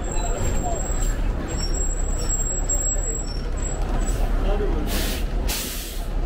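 City bus at a stop, its engine rumbling low, with two short hisses of released compressed air from its air brakes near the end.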